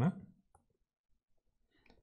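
A man's voice trailing off at the start, then near silence, with only a faint short sound just before the end.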